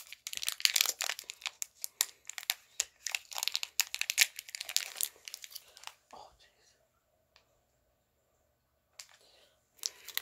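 Wrapper of a tamarind candy crinkling and tearing as it is opened, a dense rustling that stops about six seconds in.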